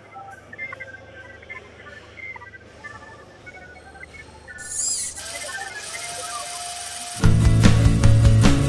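Computer-style electronic blips and chirps over a low hum, like a machine booting up, with an electronic sweep and hiss coming in about five seconds in. About seven seconds in, loud music with a strong bass cuts in.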